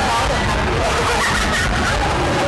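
Several voices talking over one another against a steady, noisy crowd din.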